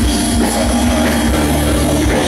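Live rock band playing loudly: electric guitar, bass guitar and drum kit, with a steady, dense sound and no pause.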